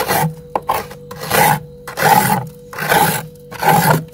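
A metal knife blade scraping thick built-up frost off the inside of a freezer compartment. It gives a few quick short scrapes, then four longer strokes about one every 0.8 s.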